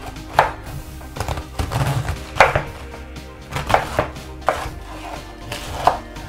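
Kitchen knife chopping a head of white cabbage on a wooden cutting board: about six sharp, irregularly spaced cuts, each knocking through to the board.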